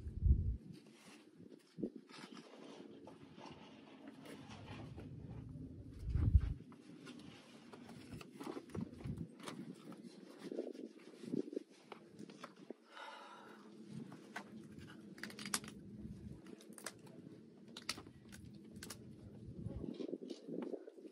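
Sharp taps and scuffs of a climber's hands and rubber shoes on granite, coming thicker in the last few seconds, over a steady low rumble with two low buffeting thumps on the microphone, one at the start and one about six seconds in.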